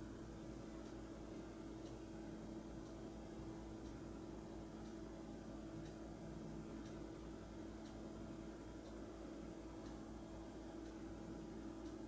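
Quiet room tone: a faint steady electrical hum with an even hiss, and a few faint scattered ticks.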